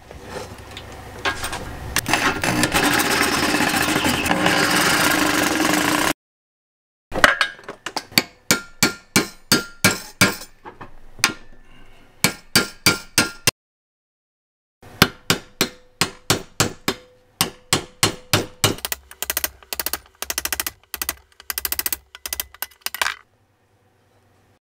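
Reciprocating saw cutting through the old steel inner sleeve of a BMW E30 rear subframe bushing for about six seconds. After a short gap, a hammer drives a punch against the sleeve in two runs of sharp, ringing metal strikes, about three a second, with a pause between the runs.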